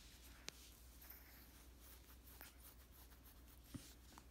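Near silence, with faint rustling of a hand on a puppy's fur and a knit blanket. Two small clicks, one about half a second in and one near the end.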